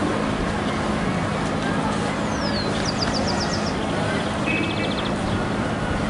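Steady hubbub of a very large outdoor crowd, many voices blending into one continuous murmur. A few faint high chirps come through around the middle.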